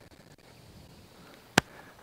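Faint quiet outdoor background, broken by one sharp click about a second and a half in.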